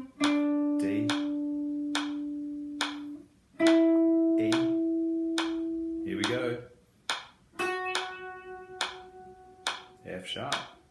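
Les Paul-style electric guitar playing single held notes one at a time, climbing up the C Lydian scale (D, E, then the sharpened F#), each ringing about three seconds. A metronome clicks steadily underneath, a little faster than once a second.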